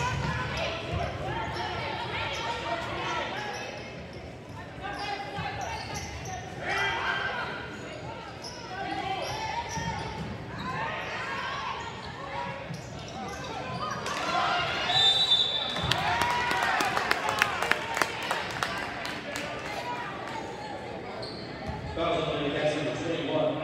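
Gym sound of a basketball game: spectators' voices and chatter, a basketball bouncing on the hardwood court, and a short, high referee's whistle a little past halfway, followed by a run of sharp bounces and knocks.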